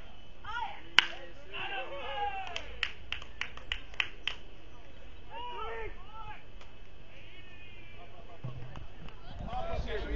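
One sharp crack of a baseball being struck or caught about a second in, followed by shouting from players and spectators and a short run of hand claps.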